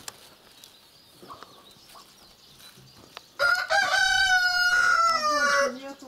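An Adler silver rooster crowing once, about halfway through: a single long crow of over two seconds whose pitch drops at the end.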